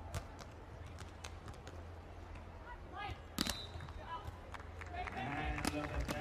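Court-side sound of a beach volleyball rally: sharp hand-on-ball hits of digs, sets and attacks, the loudest about three and a half seconds in, over a steady low rumble. Brief voices, players' calls, come in around three seconds and again near the end.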